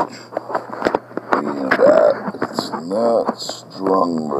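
A man's voice, mostly indistinct speech, with a few light handling clicks.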